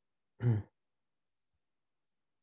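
A man's brief wordless vocal sound, a short sigh-like utterance lasting about a quarter second, just under half a second in.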